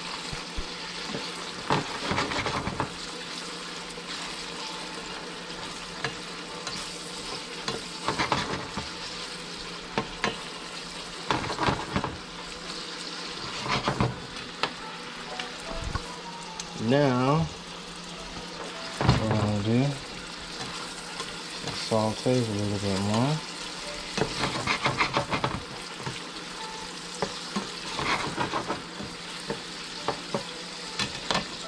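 Vegetables sizzling steadily in a stainless steel sauté pan, stirred now and then with a slotted spatula that scrapes and clicks against the pan.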